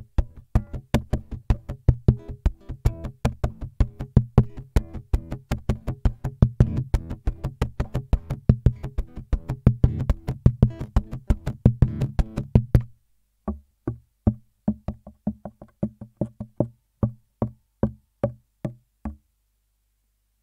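Cort AC160CFTL nylon-string classical electro-acoustic guitar played with percussive fingerstyle technique through its pickup, tone controls set flat: rhythmic slaps and taps on the body mixed with chords. A busy, steady pattern for about 13 seconds, then sparser strikes that stop about a second before the end.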